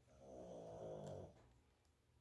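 Faint, low vocal sound from a pet, a little over a second long and drifting slightly down in pitch, then near silence.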